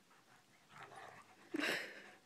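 A dog gives one short, loud play bark about one and a half seconds in, after softer sounds from the two dogs romping.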